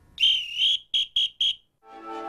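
A high whistle: one long wavering note, then three short quick toots. Music begins just at the end.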